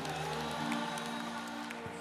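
Live worship music: the band holding soft, sustained chords, with faint crowd noise from the congregation underneath.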